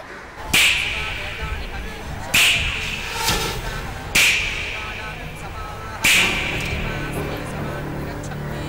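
Film background-score effect: four sharp, loud hits about two seconds apart, each fading quickly, over a low held musical bed.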